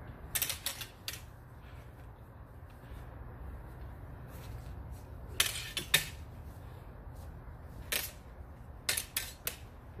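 Metal backsword blades clashing in fencing exchanges: a flurry of sharp clacks just after the start, a louder flurry about halfway through, a single clack, and a last flurry near the end.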